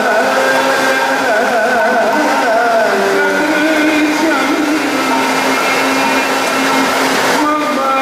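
Kathakali stage music: a singer's ornamented vocal line with wavering, gliding pitch over dense continuous drumming and cymbals.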